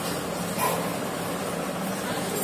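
Small clear plastic container handled by hand, with a brief crinkle about half a second in, over a steady background hum and hiss.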